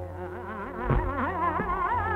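Hindustani classical vocal music on an old recording with nothing in the upper treble: a woman's voice in a fast, wavering melismatic run over a steady drone, with a tabla stroke about a second in.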